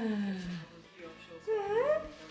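Samoyed puppy whining: a long whine that slides down in pitch, ending about half a second in, then a short whine rising in pitch near the end.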